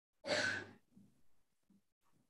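A person's single short, breathy vocal sound, such as a sigh or an exhale into a call microphone, about half a second long, followed by a few faint scraps of sound.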